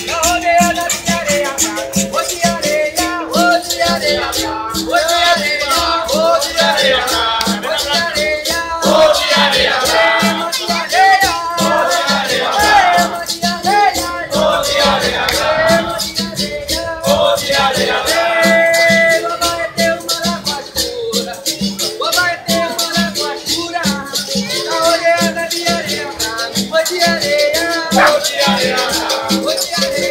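Capoeira roda music: berimbaus with caxixi shaker rattles, an atabaque drum and a pandeiro keeping a steady, even rhythm, with voices singing over it.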